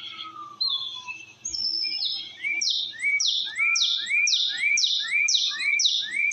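A songbird singing: after a few scattered chirps, a fast run of repeated notes begins about two seconds in, each falling sharply, about two and a half a second.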